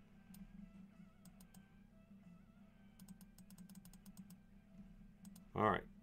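Computer keyboard typing: scattered keystrokes, then a quick run of them from about three seconds in, over faint background music and a steady low hum.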